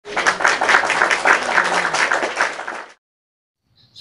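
Applause: many hands clapping at once, in a dense patter that cuts off about three seconds in.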